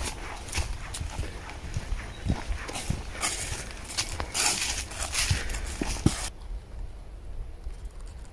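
Footsteps crunching through dry fallen leaves on a woodland path in a steady walking rhythm, over a low rumble on the microphone. The crunching stops abruptly about six seconds in, leaving quieter outdoor background.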